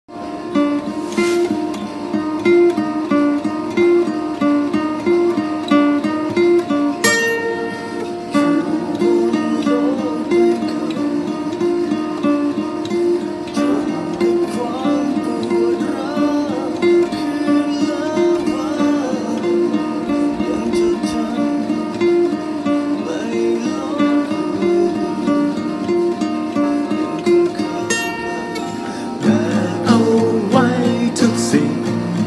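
Acoustic guitar fingerpicked in a steady, repeating arpeggio pattern. A singing voice comes in near the end.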